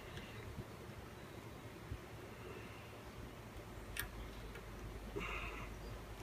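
Faint handling of small carburettor parts as the jets are removed: a single light click about four seconds in and a brief scrape near the end, over a low steady hum.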